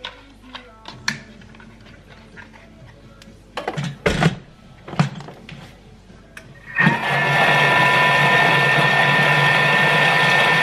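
Thermomix kitchen machine mixing pancake batter at speed 5: after a few light clicks and knocks on the counter, its motor starts about seven seconds in with a loud, steady whir and whine.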